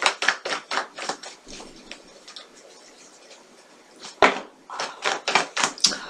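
Tarot cards being shuffled by hand: a quick run of soft slaps and clicks from the deck, about four or five a second, that pauses in the middle and then starts again.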